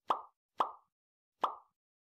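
Three short pop sound effects, the second about half a second after the first and the third nearly a second after that, each starting sharply and dying away quickly.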